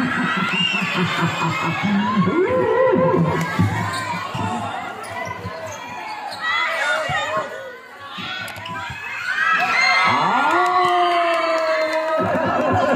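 Volleyball rally: the ball being struck with hands, among the shouts and calls of players and spectators, and a long held shout near the end.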